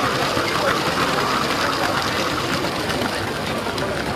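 Small electric motor of a Lego train whirring steadily as the train runs along plastic track, heard up close, with a busy murmur of voices behind it.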